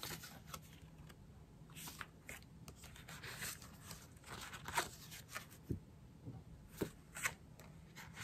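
Paper die-cut shapes and thin translucent sheets being handled and shuffled: faint rustling and sliding of paper, with a few short, sharper crinkles.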